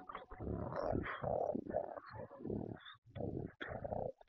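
A person's voice making a run of short, rough growling and gobbling noises, a monster-style imitation of greedy eating, broken by brief pauses.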